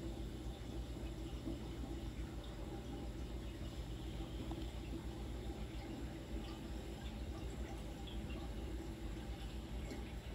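Water trickling and dripping steadily as it circulates in a saltwater reef aquarium, over a low, constant hum.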